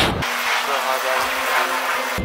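Aerosol spray paint can hissing in a steady spray.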